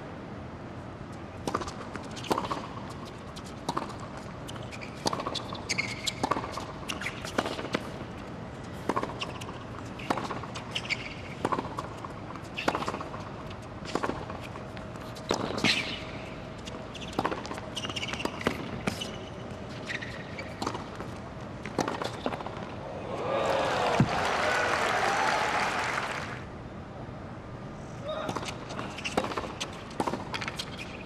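Tennis ball being struck by rackets and bouncing on a hard court during rallies, a steady run of sharp knocks. A louder swell of crowd noise rises about 23 seconds in and lasts about three seconds.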